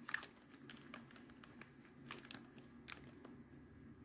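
Near silence: faint room tone with a few soft, scattered clicks from jewelry and a tape measure being handled on a tabletop.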